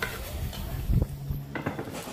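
A metal ladle stirring in a large metal pot of boiling chicken broth, knocking against the pot a few times around the middle.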